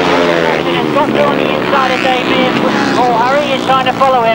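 Engines of several 350cc solo grasstrack racing motorcycles running hard together through a bend and along the straight, a steady engine noise with a commentator's voice over it.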